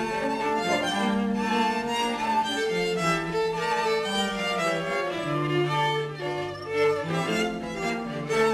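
A string quartet playing: violins carry a melody of repeated, held notes over a sustained cello line.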